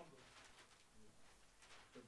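Faint rustle of a large flip-chart paper sheet being lifted and turned over the top of the pad, heard as two short swishes.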